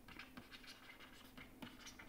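Faint scratching and light taps of a stylus writing on a pen tablet, with small irregular ticks over near-silent room tone.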